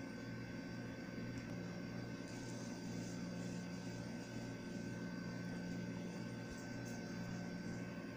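Steady low mechanical hum with a thin high whine over a light hiss, unchanging throughout, with a few faint light ticks.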